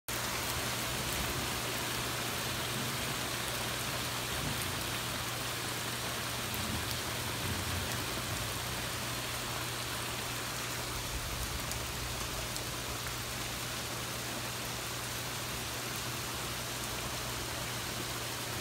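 Heavy rain falling steadily on a yard and wooden deck during a severe thunderstorm.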